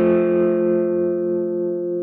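Squier Bullet Mustang electric guitar through an Orange Micro Dark amp: the last notes of a C major lick are left ringing and slowly fade, with no new note picked.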